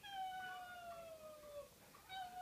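A dog howling: one long, high call that slides slowly down in pitch.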